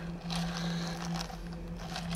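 Steady low hum inside a parked van's cabin.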